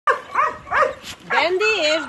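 Dog yipping excitedly: three short, quick yips in the first second, then a longer drawn-out call that rises and falls in pitch.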